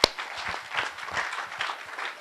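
Audience applauding, a dense run of many hand claps. A single sharp knock comes right at the start.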